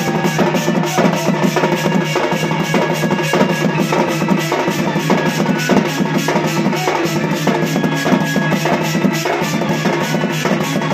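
Live folk dance drumming: a double-headed barrel drum (dhol) beaten fast and steadily with a stick and hand, over a steady held low note.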